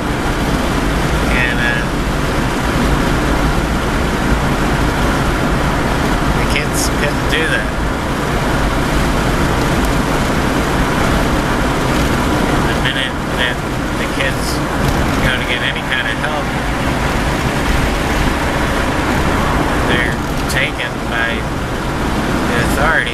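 Steady road and engine noise of a moving vehicle, heard from inside its cabin. A few short, higher-pitched sounds come and go over it now and then.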